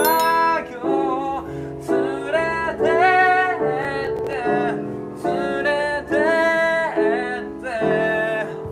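A male voice singing a Japanese pop song to his own piano accompaniment, in sung phrases of about a second each with short breaks between them, over held piano chords.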